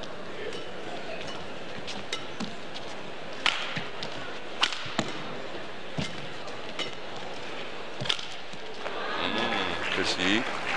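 Badminton rackets striking a shuttlecock in a rally: a series of sharp, irregularly spaced hits over a steady arena crowd hum. The crowd noise swells near the end as the rally finishes.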